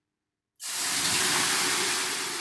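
Water thrown from a ladle onto the hot stones of a sauna heater, hissing into steam. The hiss starts suddenly about half a second in, loud, and is beginning to die away.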